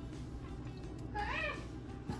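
A single short meow-like call, rising and then falling in pitch, a little past a second in, over a low steady hum.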